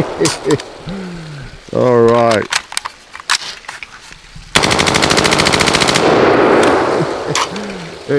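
M16A1 rifle firing one fully automatic burst of about a second and a half, a little past halfway, the shots fast and evenly spaced, with an echo trailing off afterwards.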